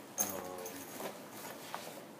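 A nylon backpack being handled and its front flap flipped over, with a knock about a fifth of a second in, followed by a short hummed voice sound lasting about a second.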